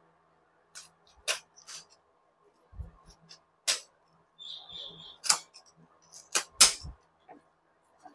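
Kitchen scissors snipping through raw chicken pieces over a metal colander: a scattering of sharp, separate snips and clicks, some with a dull knock, the loudest pair about six and a half seconds in.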